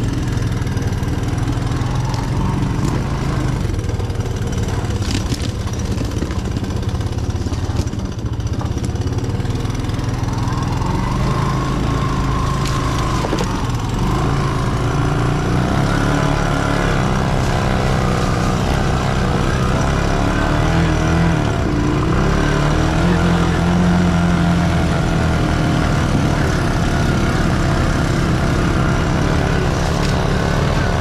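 A three-wheeler's engine running close by, steady at first, then louder with shifting pitch over the second half as the throttle changes; a quad ATV's engine runs farther off.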